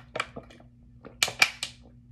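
Thin plastic water bottle crackling as the suction of drinking from it pulls a vacuum that crumples its walls, with a few scattered crackles and then a quick run of four loud pops a little over a second in.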